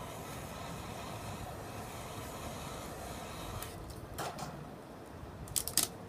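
Steady faint background hiss, then several sharp clicks and light knocks in the second half, the loudest cluster near the end, as a wire cooling rack holding a small painted canvas is handled.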